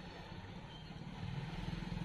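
Low rumble of a motor vehicle's engine, with a fine even pulsing, growing a little louder in the second half.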